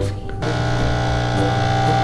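Capsule espresso machine's pump buzzing steadily as it brews coffee into a mug, starting about half a second in.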